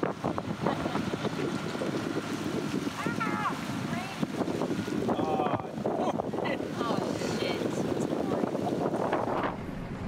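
Wind buffeting the microphone over the steady running of a dinghy's outboard motor and rushing water as the boat crosses choppy water, with a few faint snatches of voice.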